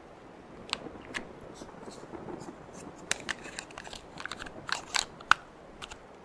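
Fresh AA batteries being fitted into a plastic flashlight: a series of sharp clicks and rattles, the loudest about five seconds in.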